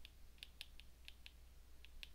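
Faint, irregular ticks of a stylus tip tapping on a tablet's glass screen during handwriting, about seven in two seconds, over a faint low hum.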